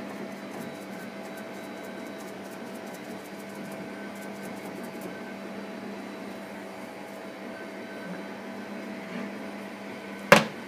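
A steady, low machine hum, with faint, light scratching of a brush spreading liquid bed-adhesive film back and forth over a 3D printer's glass build plate.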